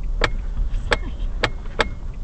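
Low rumble of a car driving, as heard from inside the cabin, with four sharp clicks or knocks at uneven intervals.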